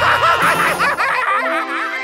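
A cartoon character's high-pitched snickering laugh over background music, giving way about a second and a half in to a held musical chord.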